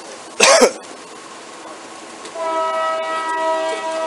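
A train horn sounding a steady chord of several pitches, starting a little past two seconds in and holding. Before it, about half a second in, comes a short burst of noise.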